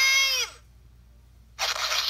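A high-pitched, sped-up cartoon voice yells and falls in pitch as it cuts off about half a second in. It plays through a handheld console's small tinny speaker. About 1.6 s in comes a harsh, noisy burst lasting about a second.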